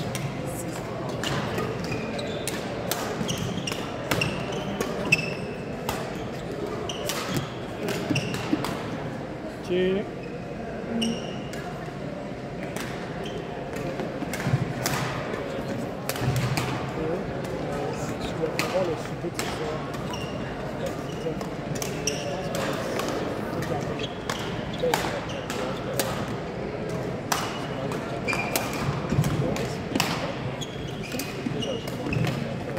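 Badminton play on a gym court: frequent sharp racket-on-shuttlecock hits and short high squeaks of court shoes on the sports floor, over a steady murmur of voices and play from other courts in a large hall.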